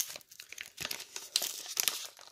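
Paper envelope being handled and opened: a run of short, crisp crinkles and rustles in several quick clusters.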